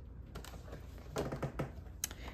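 Scattered light clicks and taps of small plastic parts of a taken-apart egg incubator being handled.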